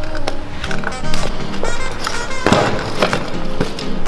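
Background music over a stunt scooter's wheels rolling on stone paving, with sharp knocks and one loud clatter about two and a half seconds in as the scooter comes down on the paving during a trick attempt that is not quite landed.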